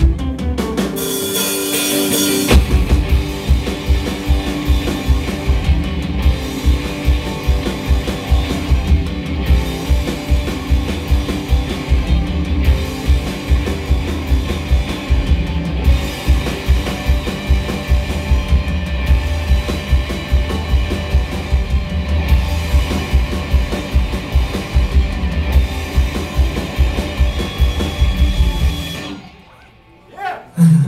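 Live rock band playing with drum kit, electric guitars and bass guitar, the drums keeping a steady beat. A cymbal wash sounds a second or two in, and the song stops about a second before the end.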